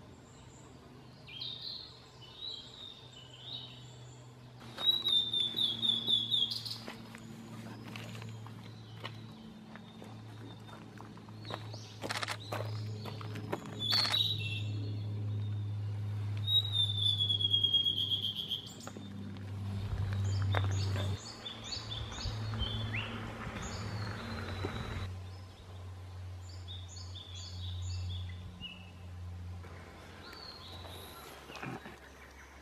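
Wild songbirds singing in a string of short clips: first a narcissus flycatcher's chirping phrases, then other birds' songs, with loud falling runs of whistled notes and quick chirp series. A steady low hum runs underneath.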